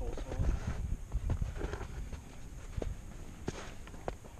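Footsteps on a snowfield: irregular, uneven steps with soft thumps and a few sharp scuffs. They are busiest in the first second and quieter afterwards, with a faint voice briefly near the start.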